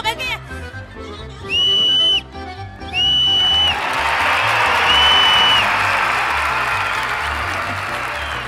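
Three short blasts on a referee's whistle, each one steady high note under a second long, the round ending as a balloon is popped; from the second blast on, a crowd claps and cheers for several seconds. A music track with a steady beat plays underneath.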